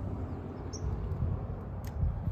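Low, steady outdoor background rumble, with a single short bird chirp about three-quarters of a second in and a faint click near the end.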